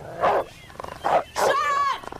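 A dog barking aggressively in three outbursts over two seconds, hostile to a newcomer.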